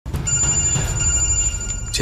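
A phone ringing with an electronic ringtone: a steady high tone that breaks off just before the end.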